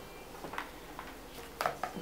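A few soft clicks and light handling noises in a quiet room, as a small makeup brush and an eyeshadow palette are picked up.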